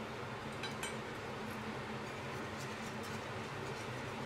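Low, steady kitchen background hum with a few faint, light clicks scattered through, as a utensil is worked in a pan of sauce on the stove.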